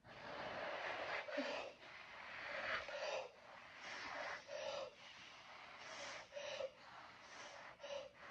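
A person blowing hard on wet acrylic pour paint, breath pushing the paint outward into a bloom: a series of about seven long, hissing puffs with short pauses between them. The way the paint is blown decides how many peacock cells come up.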